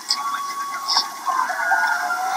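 Distant voices from a football crowd calling out, long drawn-out calls with no nearby speech.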